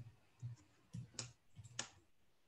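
Faint clicks of computer keyboard keys being typed, about five keystrokes at an uneven pace.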